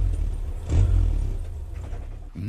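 Car engine and road noise as heard inside the cabin: a low, steady rumble that swells briefly about a second in and then gradually dies down.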